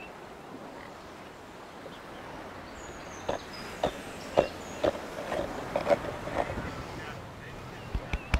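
The flesh of a dry coconut half being scraped against a knife blade to grate it: rasping strokes about twice a second, starting about three seconds in, some with a short squeak.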